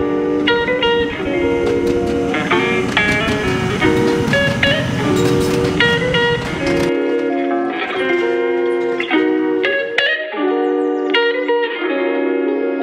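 Background music: a melody of picked guitar notes played in a steady run. A low rumble sits underneath for the first seven seconds or so, then drops away.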